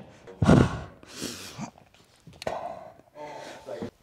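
Pained, winded breathing of a skateboarder just after slamming chest-first onto a rail: gasping and heavy exhales. There is a thud about half a second in and a sharp tap about two and a half seconds in.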